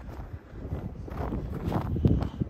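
Footsteps in fresh snow at a walking pace, about two steps a second, growing louder in the second half.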